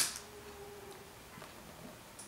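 A single sharp click of hard plastic as a burr is pulled off the freshly cut tube of a disposable tattoo tip, dying away within a fraction of a second.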